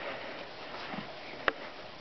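Faint sniffing close to the microphone, with a single sharp click about one and a half seconds in.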